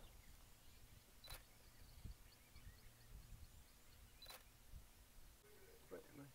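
Near silence with two faint, sharp clicks about three seconds apart.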